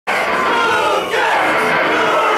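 Live band playing loud in a club, mixed with crowd noise from the audience packed in front of the stage.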